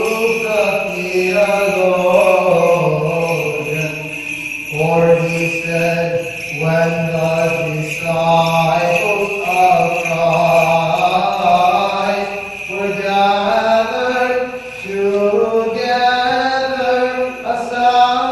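Byzantine chant: one voice sings a hymn of the service in long phrases of held and gliding notes, pausing briefly between phrases.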